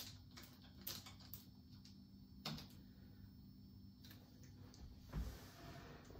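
Faint scattered clicks and light knocks of hands at a resin printer: the resin vat being tightened down into its slot, then a low thump a little after five seconds as the plastic resin bottle is handled. A faint steady low hum lies underneath.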